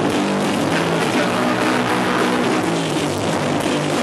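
A live punk rock band playing loudly: electric guitar, bass and drum kit, a steady unbroken wall of sound.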